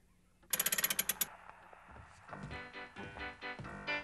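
Wind-up gramophone being set playing: a quick run of sharp clicks about half a second in, a faint scratchy hiss, then music from the record starting a little after two seconds.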